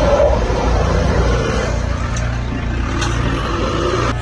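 The engine of an SUV stuck in deep mud revving under strain, with a continuous noisy churn as it struggles for grip.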